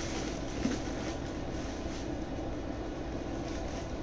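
Paper stuffing rustling softly as it is handled inside a leather tote bag, over a steady low rumble.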